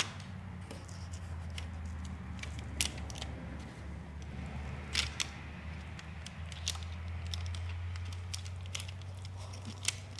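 Window tint film crinkling and ticking as it is handled and worked along the bottom of a car door window: scattered light clicks and crackles, the sharpest about three and five seconds in, over a steady low hum.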